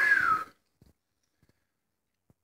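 A short, breathy vocal sound from a man, about half a second long at the very start, rising then falling in pitch, followed by a few faint clicks.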